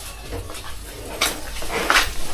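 Cattle feeding at a trough: rustling of leaves and fodder, with two short crunching sounds, about a second in and near the end.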